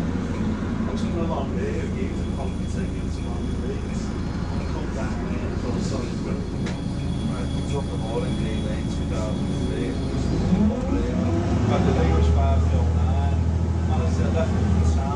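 Interior sound of a Volvo B6LE single-deck bus under way: its diesel engine runs with a steady low drone and road noise, and the drone grows louder about three-quarters of the way through. Passengers talk quietly in the background.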